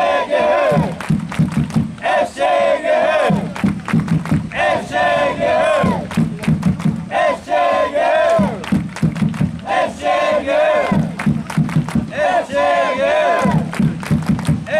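Football supporters chanting in unison, a short shouted phrase repeated about every two and a half seconds, with rhythmic drumming and claps between the phrases.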